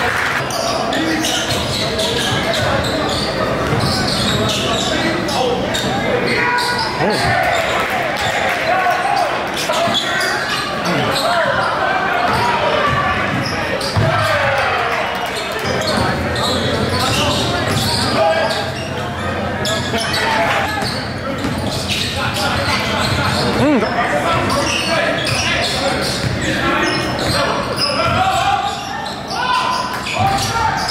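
Basketball being dribbled on a gym's hardwood floor during a game, with indistinct voices of players and spectators echoing in the large hall.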